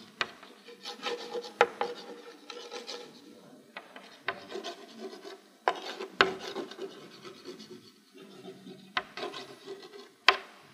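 Chalk writing on a blackboard: irregular short scratching strokes of handwriting, with several sharp taps where the chalk strikes the board.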